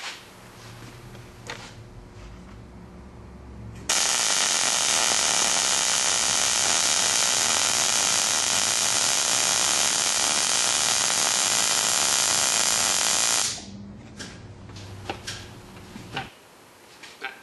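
Miller MIG welder arc running steadily for about nine and a half seconds, starting abruptly about four seconds in and cutting off near the end. The wire feed is at 185 with the voltage at 18, so the wire feeds fairly stably into the puddle, though the feed is still set a little low for a good weld.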